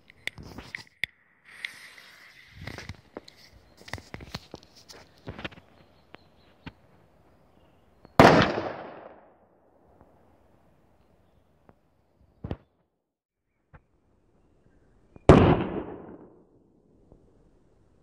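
DFG Senior Bang firecracker (0.5 g of flash powder) going off with a loud, sharp bang that echoes for about a second, followed some seven seconds later by a second bang of the same kind. Before the first bang, a few seconds of light clicks and rustling.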